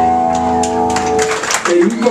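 Electric guitars and amplifiers of a hardcore band holding the final chord of a song, which rings on and dies away. Sharp claps and shouts from the crowd come in over it, and a man's voice starts on the microphone near the end.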